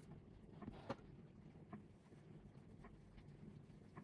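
Near silence: room tone with faint soft ticks about once a second, one slightly louder about a second in.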